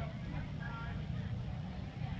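A steady low rumble of outdoor background noise with faint voices of people talking at ringside, a short stretch of speech about half a second in.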